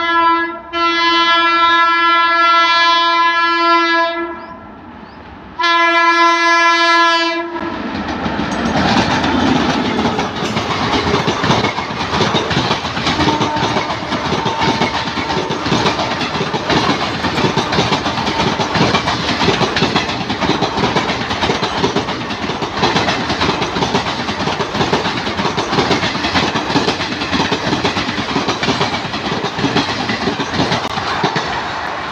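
A WAP5 electric locomotive's air horn sounds a long steady blast, broken briefly near the start. After a short pause it gives a second, shorter blast. From about seven and a half seconds in, the coaches of the train pass close by with a continuous clickety-clack of wheels over rail joints.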